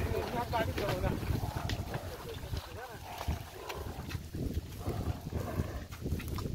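Men's wordless calls and shouts urging on a pair of water buffaloes hauling a loaded cart through mud, with wind buffeting the microphone.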